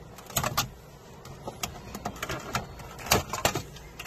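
Clear plastic cover over a pachislot machine's circuit board being unclipped and lifted off by hand: a string of sharp plastic clicks and knocks, loudest about three seconds in.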